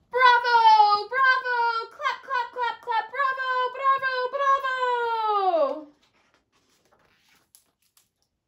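A woman's high-pitched voice calling out drawn-out cheers of "Bravo!" several times, the last call sliding down in pitch.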